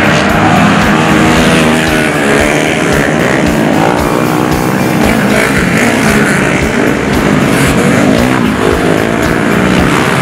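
Flat track racing motorcycles going by on the dirt oval, their engines' pitch rising and falling again and again as the riders roll off and get back on the throttle through the turn.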